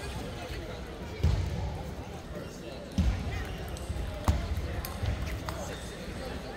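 Table tennis rally: sharp clicks of the plastic ball off paddles and table, with a few heavy thumps, over the chatter of a busy hall.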